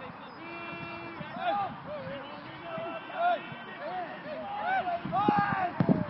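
Players shouting short calls over one another across the pitch, with one held note about half a second in. Just before the end comes a single sharp thud: the goalkeeper kicking the football long upfield.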